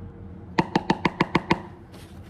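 A rapid run of seven sharp knocks with a slight ringing pitch, about seven a second, starting about half a second in and lasting about a second.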